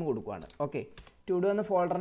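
A person speaking, with computer keyboard keystrokes; a click falls in a short pause about a second in.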